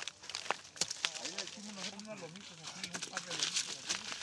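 Faint voices of workers in an agave field, with a few sharp knocks near the start.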